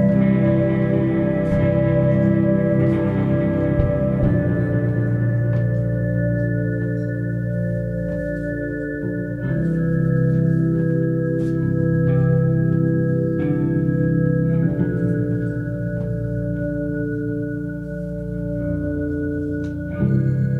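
Live band playing an instrumental passage: an electric keyboard holds sustained chords that change every few seconds over a deep bass line, with guitar and light percussion underneath.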